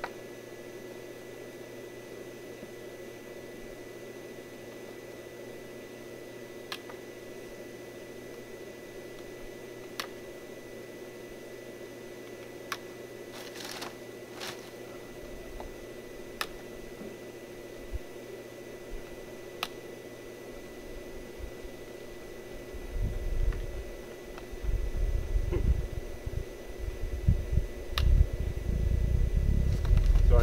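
Sharp single clicks of a hand punch tool piercing holes in half-inch drip irrigation tubing, a few seconds apart, over a steady background hum. Irregular low rumbling comes in during the last several seconds.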